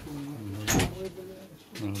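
A man's low voice in drawn-out, murmured syllables, with a short, loud sudden noise about three quarters of a second in.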